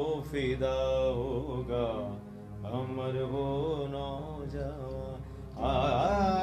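A man singing a slow, ornamented Hindi film-song melody to his own electronic keyboard accompaniment, illustrating raga Gujari Todi. The sung line breaks off briefly about two seconds in, then resumes and swells louder near the end.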